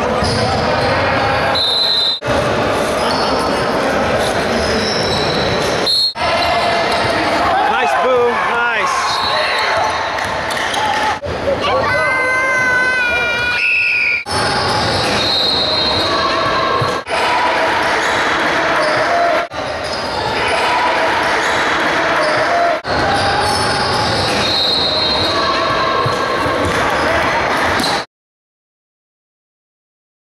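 Live basketball game sound in a large gym: a ball bouncing on the hardwood court among players' and spectators' voices, broken every few seconds by edit cuts. The sound stops abruptly about two seconds before the end.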